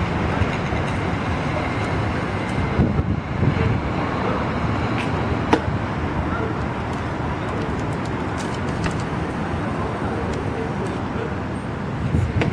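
Steady city street noise of traffic, with faint voices in the background and one sharp knock about five and a half seconds in.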